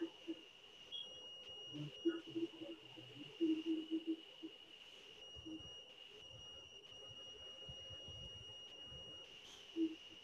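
A faint, steady high-pitched electronic whine on video-call audio, with a few faint snatches of voice in the first half.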